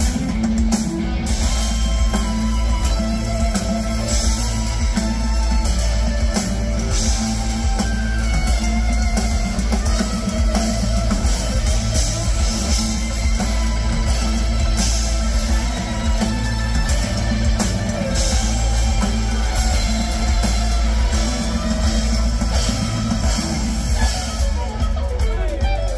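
Live rock band playing: electric guitar lines over bass and a drum kit, loud, steady and bass-heavy through a PA system.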